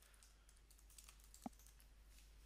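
Faint typing on a computer keyboard: a quick run of light keystrokes, with one slightly louder click about one and a half seconds in.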